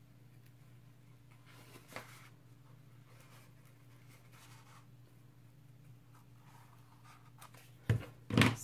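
Scissors cutting a circle out of a sheet of white craft foam: faint, scattered snips and scrapes, with a sharper click about two seconds in and another near the end.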